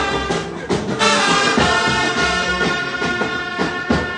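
Music led by a trumpet playing a melody of held notes, with other instruments underneath.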